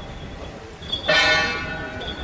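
A large gong struck once, about a second in, its ring dying away over about a second. It is one of a steady series of gong strikes, roughly every two and a half seconds.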